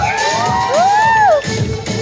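An audience cheering and shrieking over pop dance music with a steady beat. Several high shrieks rise and fall in pitch during the first second and a half, and then the cheering drops back under the music.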